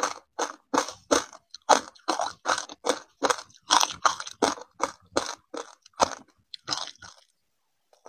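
Close-miked chewing of ice coated in crunchy grains: a steady run of loud crunches, about two to three a second, that stops about a second before the end.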